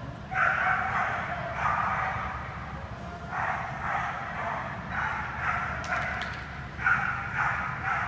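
A dog barking excitedly in about five rapid volleys of roughly a second each, with short pauses between them.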